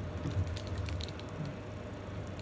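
Pizza cutter wheel pressed and rolled through a crumbly giant chocolate chip cookie, giving a few faint, scattered crackles over a low steady hum.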